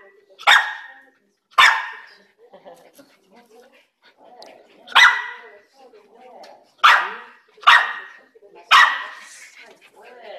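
Small black dog barking six times in short, sharp barks: two near the start, then four more from about five seconds in. Faint murmur of voices in the gaps.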